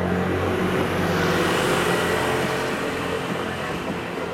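A road vehicle passing by, its noise swelling to a peak about a second and a half in and then easing off.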